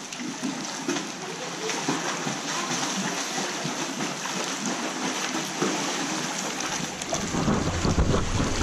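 Pool water splashing and sloshing as a swimmer does breaststroke. It gets louder and fuller near the end as he comes up close.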